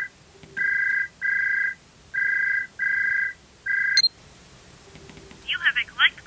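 Phone ringing with a two-tone electronic ring in pairs of short bursts, two pairs and the start of a third, cut off with a click about four seconds in as the call is answered. A voice starts near the end.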